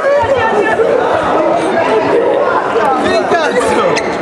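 A crowd of young people talking and shouting over one another, excited chatter with many voices at once.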